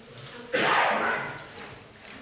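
A single sudden loud burst of noise about half a second in, lasting about half a second and fading away over the following second.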